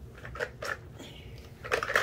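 Plastic toy shape blocks clicking and rattling against each other as a hand rummages in a plastic bucket: a few separate clicks, then a quicker clatter near the end.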